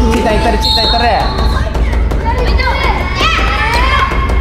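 A group of children calling out and chattering together in a large indoor hall, with a steady low hum underneath.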